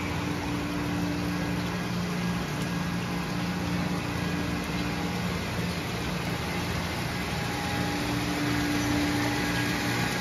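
Steady mechanical hum of a plastic-extrusion cooling water tank running, its circulation pump going and water pouring into the tank. A low tone in the hum drops out for a couple of seconds in the middle, then returns.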